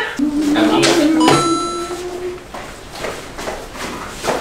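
A man's voice calling out "시원한 물~" ("cold water~") in a drawn-out sing-song, the last word held on one level note for about two seconds. A brief high ringing tone sounds over the held note about a second in.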